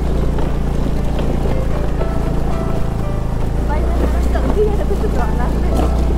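Motor scooter engine running steadily while the scooter rides along a dirt track.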